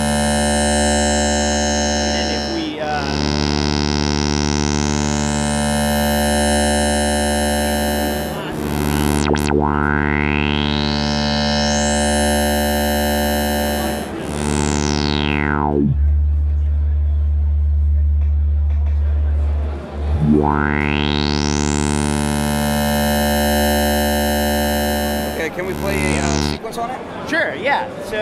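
Sonicware Liven 8bit Warps wavetable synth playing a buzzy, lo-fi note over a heavy bass, restarting about every six seconds, while its filter is swept by hand. The sound closes down to a dull low hum in the middle and opens back up to bright a few seconds later.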